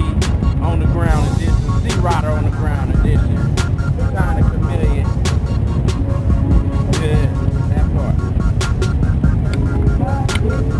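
Low, steady rumble of motorcycle engines, with music and a voice over it and a few sharp clicks.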